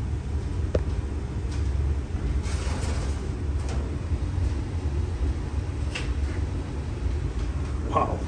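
Wood-fired maple sap evaporator (a 2x6 Smoky Lake Corsair) running at a full boil: a steady low rumble of the fire and boiling sap, with a few faint ticks.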